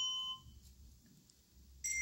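Coloured handbells played one note at a time: a bell note rings and fades in the first half-second, then after a short silence a higher bell is struck near the end and rings on.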